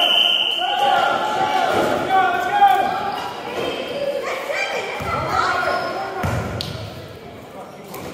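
Basketball bouncing on a hardwood gym floor amid indistinct voices of players and spectators, echoing in a large hall. A high, steady whistle stops about half a second in, and there is a sharp thud a little before the middle.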